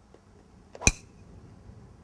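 Golf driver striking a ball on a full swing: a single sharp crack with a short metallic ring, a little under a second in.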